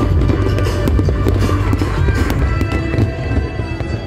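Aerial fireworks going off in a dense run of bangs and crackles, over loud music.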